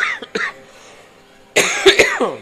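A person coughing: a short cough at the start and a louder one near the end.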